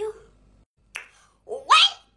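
Short wordless vocal sounds from a voice: a brief voiced noise at the start and a quick exclamation rising in pitch near the end, with a single sharp click about a second in.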